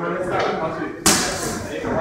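A single hard smack about a second in, with a short ring after it, over voices in the room.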